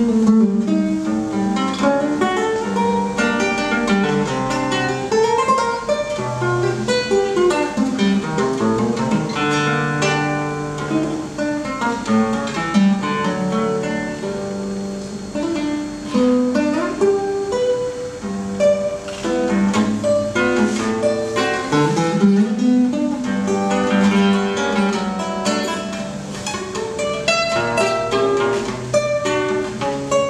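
Solo classical guitar played fingerstyle: a continuous flow of plucked melody notes over bass notes and chords.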